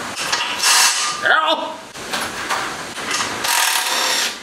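Hand tools and metal hardware clattering and rattling as they are handled and rummaged through, with two louder bursts, one about half a second in and one near the end.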